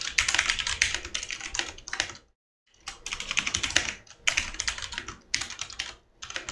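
Typing on a computer keyboard: a quick run of key presses as a command is typed out. The typing stops dead for about half a second a little over two seconds in, then resumes.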